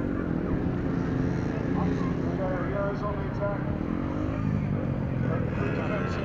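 Motorcycle engines revving, rising and falling in pitch several times, under a public-address commentator's voice.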